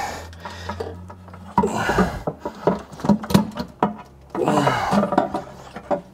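Close rubbing and scraping handling noise of hands fitting a plastic hose clamp onto the return pump hose, in two stretches with a short pause between. A low steady hum is heard before the handling starts.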